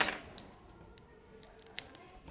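A few small sharp clicks of a metal crocodile clip being handled and snapped onto a wire lead, the loudest two close together near the end.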